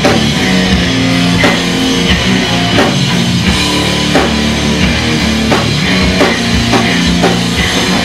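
Hardcore band playing live and loud: distorted electric guitar and bass guitar over a drum kit, with drum hits in a steady, heavy beat.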